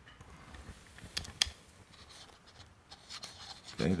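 Hand coffee grinder being adjusted: a few sharp clicks a little over a second in, then faint scraping as the cone burr is turned against the ring burr until they rub, marking the zero point.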